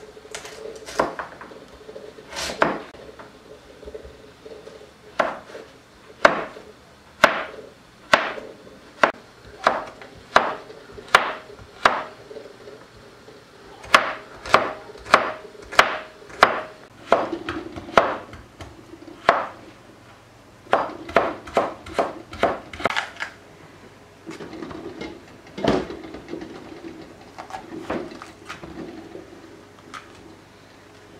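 Kitchen knife chopping peeled carrots on a wooden cutting board: sharp knocks of the blade hitting the board, irregular, at times about one a second and at times in quicker runs of two or three a second.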